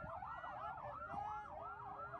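Several vehicle sirens wailing at once, each sweeping quickly up and down in pitch so that the wails overlap and cross.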